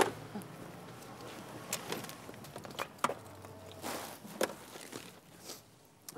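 Handling sounds of a bicycle being moved: a sharp knock right at the start, then scattered clicks and knocks with a brief rustle about four seconds in.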